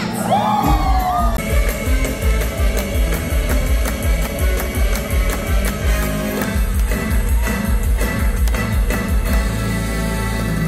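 Upbeat stage-musical song played loud in a theatre: a singer holds a slightly falling note at the start, then heavy drums and bass come in just under a second in and keep a steady dance beat under the singing.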